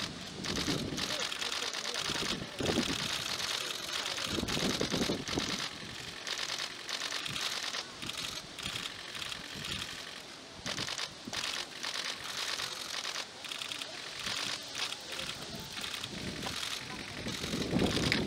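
Many camera shutters clicking in rapid, overlapping bursts from a press pack, over low murmured voices.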